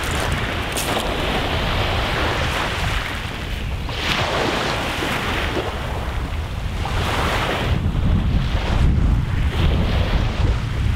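Wind buffeting the microphone over small waves washing against a rocky shoreline, the wash swelling and easing every few seconds.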